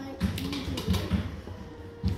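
A spoon knocking and scraping against a metal can, a quick irregular run of light taps and clicks as food is worked out into a mixing bowl.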